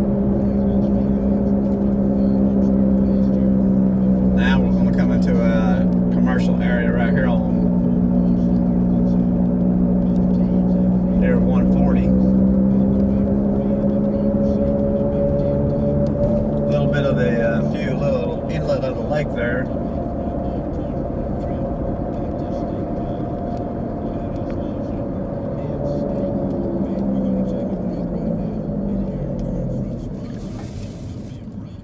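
Steady hum of a car's engine and road noise heard from inside the moving car, its pitch drifting slowly up and down with speed.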